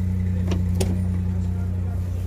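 Steady low hum of an idling engine, with two sharp clicks about half a second and just under a second in as the rear hatch of a Daewoo Damas minivan is unlatched and swung open.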